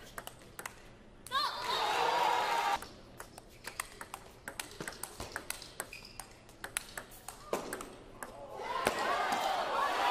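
Table tennis ball being hit back and forth and bouncing on the table in a rally, a series of sharp, light ticks. A burst of crowd voices and applause comes about a second in, and the crowd swells again near the end.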